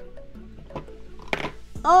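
Soft background music with light clicks of plastic LEGO pieces being handled, and a short plastic clatter about a second and a half in. A woman's voice starts right at the end.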